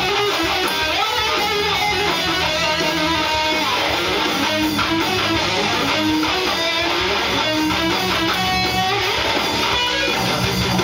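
Rock music: an electric guitar playing a melodic lead line, with notes sliding in pitch, over a full band backing track.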